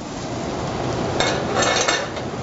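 Steady sizzling of fennel and garlic frying in olive oil in a hot pan, with a short run of metal clinks of a utensil against the pan a little past a second in.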